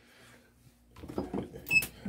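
Quiet handling of a hoodie and transfer sheet, mostly faint. In the second half a man's low, half-voiced murmur comes in, and a brief sharp metallic click sounds near the end.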